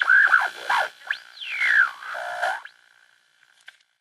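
A short electronic sound effect: a steady high tone, with a whistle-like glide that sweeps up and then down about a second in, then a lower warble. It cuts off abruptly about two and a half seconds in.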